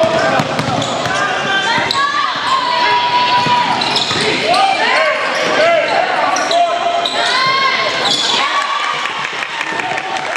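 Live basketball game sounds on a hardwood court: a ball bouncing, short squeaks from sneakers, and players and spectators shouting across each other. There is no commentary.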